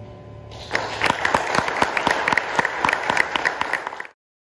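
Audience clapping, starting about half a second in as the last piano chord dies away, then cut off suddenly at the end.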